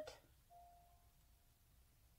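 Near silence, with one faint ringing tone like a ding that begins about half a second in and fades away.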